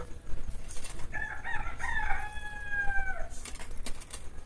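A rooster crowing once: a few short notes, then a long held note that falls away, about two seconds in all. A few soft clicks follow near the end.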